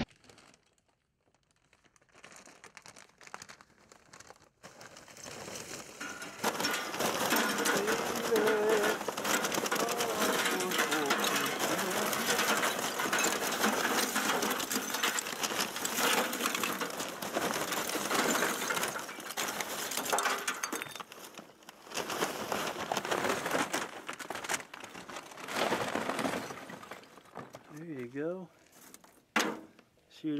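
Lump charcoal poured from a bag into a metal grill firebox, the lumps clattering against the metal and each other. The pour builds a few seconds in, runs dense for about twenty seconds with short breaks, and trails off near the end.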